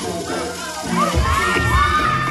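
Seated crowd cheering and yelling with high-pitched whoops that swell about a second in, over a dance track whose heavy bass beat comes back in at the same point.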